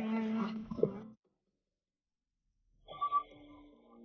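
Soundtrack of a drama edit: a held low tone that stops about a second in, then near silence. Near the end a brief bright shimmer comes in over soft sustained tones, like a transition sound effect over background music.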